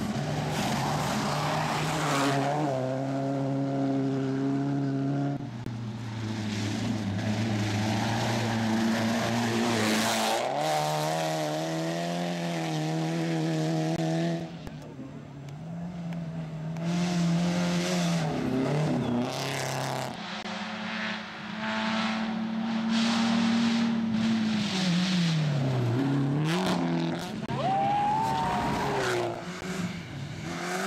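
Rally cars at full throttle on a gravel stage: the engine notes hold for a few seconds, then jump in pitch as the cars change gear, over loose gravel and dirt noise. Near the end one engine's pitch drops and climbs again as the car slows and accelerates.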